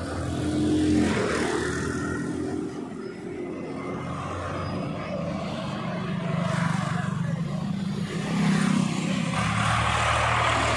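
Street traffic: motor vehicle engines running close by, one growing louder from about six seconds in.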